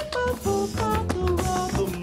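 A song from a stage musical performed live: a sung melody over band accompaniment, stepping quickly from note to note.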